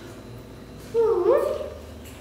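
A baby macaque's single call, sliding up in pitch, about a second in and lasting under a second.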